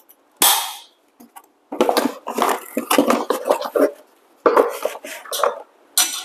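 Metal clinking and rattling of a stainless steel filter basket being fitted back into an espresso machine's portafilter. There is a short burst about half a second in, then spells of clattering through the middle and near the end.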